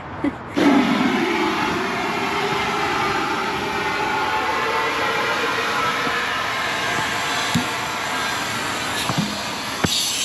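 Compressed air from a scuba tank hissing steadily through a regulator hose into a large inflatable ball fender as it fills, starting about half a second in.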